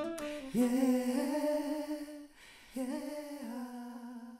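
The closing bars of a song: a voice holding two long notes, the first starting about half a second in and the second fading out at the end.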